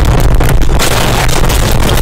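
A car crashing and rolling over, heard from inside the cabin: a loud continuous din of crunching impacts and scraping, heavier from nearly a second in.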